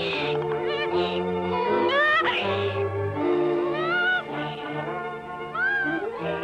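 Cartoon burro's braying voice, a few rising calls, over an orchestral score.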